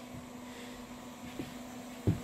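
A low, steady electrical hum over faint hiss, with one faint light tap about one and a half seconds in.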